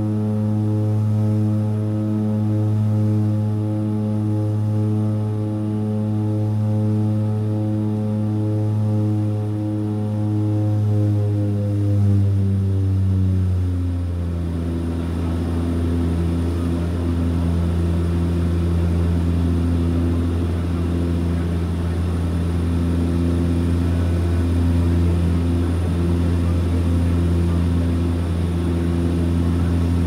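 Cabin drone of a de Havilland Canada DHC-6-300 Twin Otter's two Pratt & Whitney PT6A turboprops in the climb: a loud, steady low propeller hum. Its pitch slides down between about eleven and fourteen seconds in as the propellers are slowed, then holds steady at the lower pitch.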